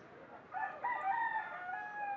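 A rooster crowing: one long crow beginning about half a second in.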